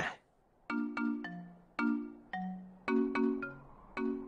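Light cartoon background music: short phrases of struck, bell-like notes over a low chord, repeating about once a second, starting after a brief silence.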